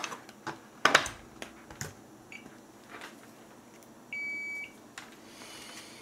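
Digital multimeter beeping as its probes are set on the legs of a P12N60 power MOSFET: a brief chirp a little past two seconds in, then a steady half-second beep around four seconds. Sharp clicks and knocks from handling the probes and board come in the first two seconds, the loudest about a second in.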